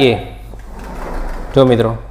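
Sliding whiteboard panel rolling sideways along its track, an even rolling noise lasting about a second, between brief bits of a man's voice.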